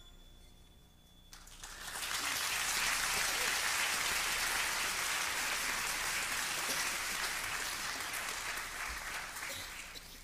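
Congregation applauding at the end of a musical number: the applause starts about a second and a half in, swells quickly, and tapers off near the end.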